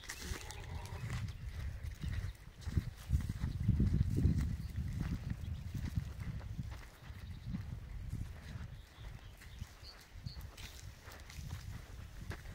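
Footsteps on dry, stubbly earth, with a low, uneven rumble on the microphone.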